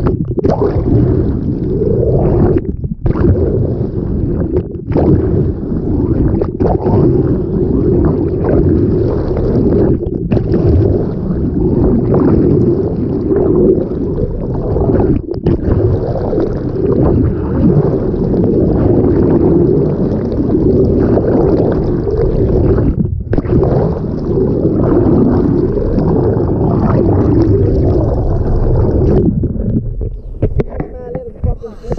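Loud, steady rushing and gurgling of water against a camera held underwater beside a moving sailboat. It cuts out briefly a few times.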